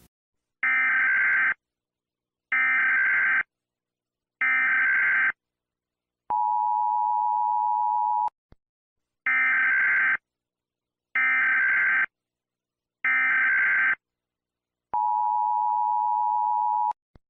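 Emergency Alert System header: three short bursts of screeching digital data about two seconds apart, then a steady two-note attention tone for about two seconds; the sequence then repeats, three more data bursts followed by the attention tone again near the end.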